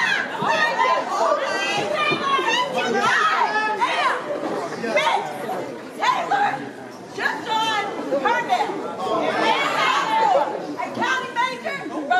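Several women's voices shouting and chanting over one another, with crowd chatter around them.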